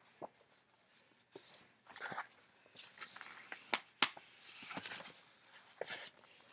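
Paper and card rustling and scraping in irregular spurts as a piece of memorabilia is worked out of a tight pocket in a book, with a few sharp ticks of handling, the sharpest about four seconds in.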